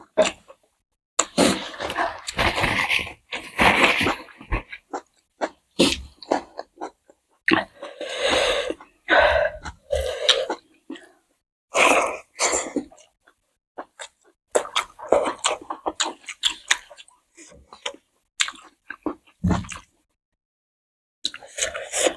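Close-miked chewing and mouth sounds of people eating rice and curry with wet clicks and smacks, coming in irregular bursts with short pauses between mouthfuls.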